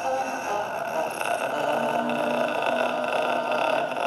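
Voices holding long, steady droning tones together, the pitches shifting every second or so.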